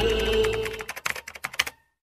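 Keyboard-typing sound effect: a rapid run of key clicks that stops abruptly, coming in as a held intro-music tone fades out.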